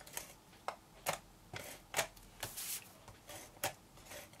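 A handheld Fast Fuse tape-gun adhesive applicator pressed and drawn along the edges of cardstock panels. It gives a string of short clicks and rasps, about two a second.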